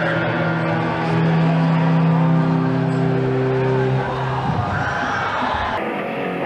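Live punk rock band playing on stage, with long held notes ringing through the first four seconds or so before the music changes. Just before the end an abrupt cut switches to another live rock band.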